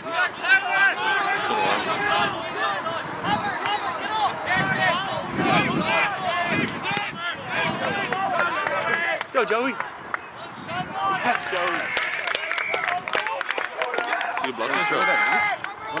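Overlapping shouts and calls from rugby players and touchline spectators, with a few louder, drawn-out shouts in the second half.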